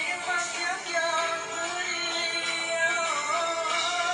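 Dangdut duet performance playing: a singer holding long, wavering notes over band accompaniment.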